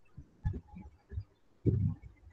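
A few irregular low thumps and bumps on an open call microphone, the loudest near the end.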